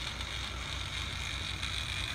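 Low-geared electric motor of an automated greenhouse tarp roller running steadily, turning the roll-up pole slowly: a constant low hum with a thin, high whine above it.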